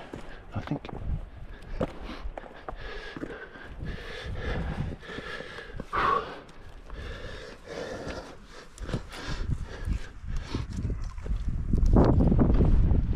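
A scrambler's heavy breathing and grunts of effort, with scuffs and knocks of hands and boots on rough rock; one louder grunt comes about six seconds in.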